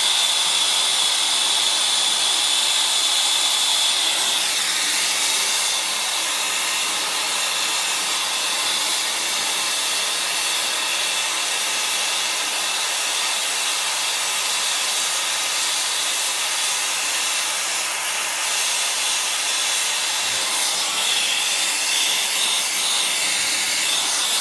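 ASCO air-fuel brazing torch burning with a steady hissing flame on a copper pipe joint. A thin high whistle rides over the hiss for the first few seconds and comes back near the end.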